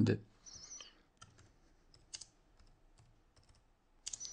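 Computer keyboard being typed on: a short, irregular run of light key clicks as a terminal command is entered.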